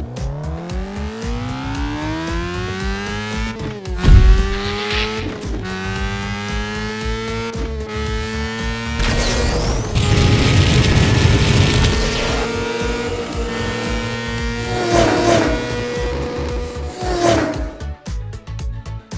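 Cartoon race car sound effects: an engine revving up in a steeply rising whine over the first few seconds, a loud thump about four seconds in, then the engine running steadily with a slow climb in pitch. A burst of rushing noise comes around ten seconds, and two short tire squeals sound near the end.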